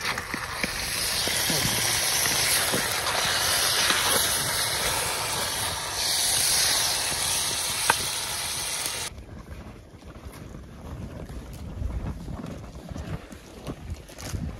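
Bacon and vegetables sizzling and steaming in a cast-iron Dutch oven set on a campfire: a steady, loud hiss, with one sharp clack about eight seconds in. About nine seconds in it cuts off abruptly to much quieter outdoor noise.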